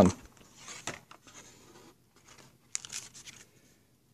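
White cardboard packaging being handled: a paperboard insert is slid and lifted out of the box, giving faint scraping and rustling, with a short cluster of sharper rustles about three seconds in.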